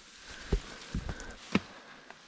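Footsteps pushing through wet, overgrown grass and weeds, with stems brushing past: three soft thuds about half a second apart over a low rustle.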